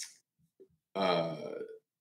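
A man's voice in a hesitant, drawn-out 'a…' between short pauses, mid-sentence.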